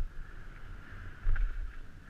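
Downhill mountain bike ridden fast down a dirt trail: wind buffeting the helmet-mounted microphone over a low rumble of tyres and suspension on the ground, with a few sharp knocks from bumps, the loudest a little over a second in.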